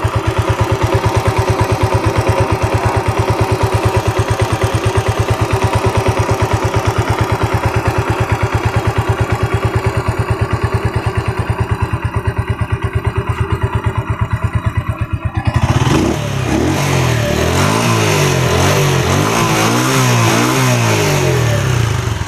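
Jialing 125 cc single-cylinder air-cooled engine of a Star X125III motorcycle idling steadily with even firing pulses while being soaked with water. About three-quarters of the way through it is revved up and down repeatedly under a loud hiss. It keeps running though drenched, the sign that its ignition wiring is sound.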